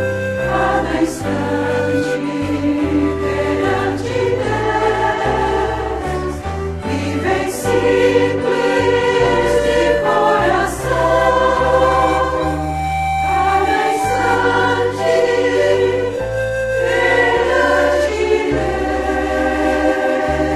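A choir singing a Catholic hymn over instrumental accompaniment, with sustained bass notes that change every second or two.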